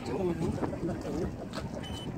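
Faint talk in the background with light wind on the microphone.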